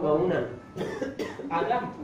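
A man talking, with a cough about a second in.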